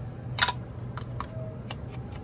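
A few sharp plastic clicks and taps as a Distress ink pad's snap-on lid is pulled off and set down on the cutting mat, the loudest about half a second in.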